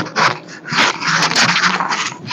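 Clip-on microphone being handled at close range: loud, irregular rustling and scraping with sharp clicks as it is fiddled with and adjusted.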